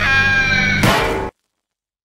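A high-pitched scream sound effect that wavers briefly at the start and then holds one pitch. It ends in a short, noisy crash-like burst that stops abruptly a little over a second in.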